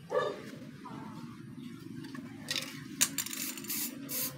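Aerosol spray can of clear coat hissing in several short bursts in the second half, sprayed onto a mountain bike crank arm.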